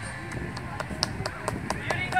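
Scattered hand claps from an audience after a song ends: short, sharp, irregular claps, with wind rumbling on the microphone underneath.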